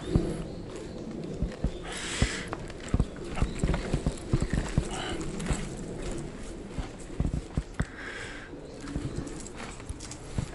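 Wheelchair rolling over uneven concrete paving, its wheels and frame giving off irregular clicks and knocks.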